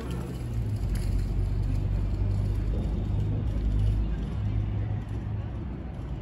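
Low rumble of a motor vehicle passing on the street. It builds over the first second, is loudest about four seconds in, then fades.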